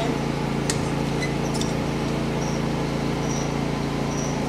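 Steady machine hum, like a fan running, with a few light clicks in the first two seconds.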